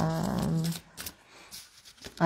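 A woman's voice holding one long, level vowel for about the first second. Then soft rustling and a few light clicks of a deck of cards being shuffled by hand.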